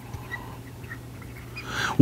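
Dry-erase marker squeaking faintly in short strokes on a whiteboard over a low steady electrical hum, with a breath drawn in near the end.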